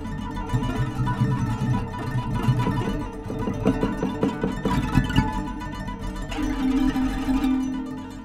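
Prepared acoustic guitar lying flat, its strings struck and tapped by hand over a glass rod and dural rollers laid across them, giving a ringing, rattling string texture. A dense run of quick strikes in the middle gives way to a held ringing note near the end.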